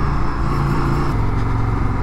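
Indian FTR 1200's V-twin engine running steadily under way at low town speed, its pitch dropping slightly about halfway through.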